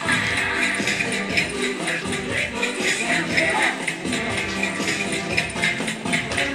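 Cha-cha-cha dance music playing with a steady, even beat, and dancers' shoes shuffling on a tiled floor beneath it.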